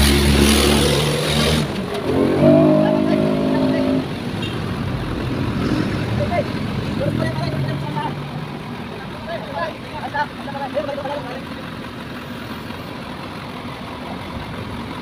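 Road traffic passing close by: a motorcycle goes past at the start, then a vehicle engine revs for about two seconds. After that the traffic settles to a lower background with faint voices.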